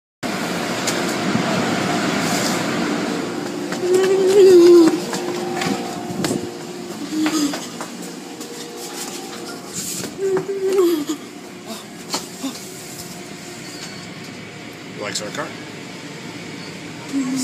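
Indistinct voices over steady background noise that eases off about six seconds in.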